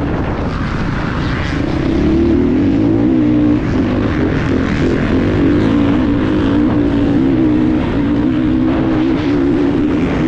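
Off-road motorcycle engine running hard under throttle as the bike is ridden along a dirt track, heard from the rider's helmet camera. Its steady pitch wavers with the throttle and gets a little louder about two seconds in.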